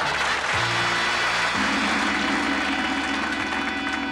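A short musical sting between comedy sketches: held chords that change twice in the first couple of seconds, then ring on and fade. Studio audience laughter and applause trail off under its opening.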